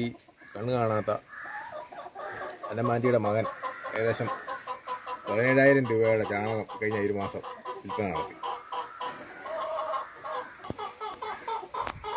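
A man talking in a low voice in several phrases, with chickens clucking around him.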